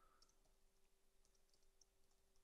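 Near silence, with a few faint computer-keyboard clicks as code is typed.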